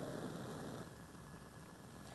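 Faint, steady hiss of a lit Bunsen burner burning with its air vent open and a blue flame.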